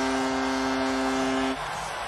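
Arena goal horn sounding one steady low tone over a cheering, clapping crowd, marking a home-team goal. The horn cuts off suddenly about a second and a half in, and the crowd noise carries on.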